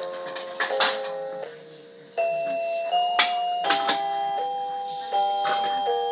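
Toy electronic keyboard playing a run of clean, electronic-sounding notes and chords through its small built-in speaker, each held for roughly half a second to a second before the next, with a few sharp clicks between notes.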